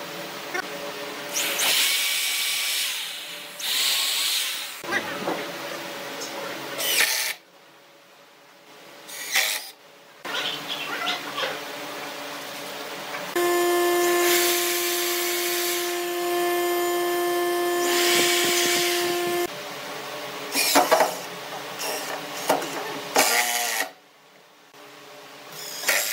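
Power drills working pine: a corded electric drill runs steadily for about six seconds in the middle, boring into a chair arm, among several shorter bursts of a cordless drill driving screws.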